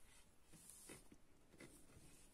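Near silence, with a few faint, soft rustles of yarn and a crocheted piece being handled.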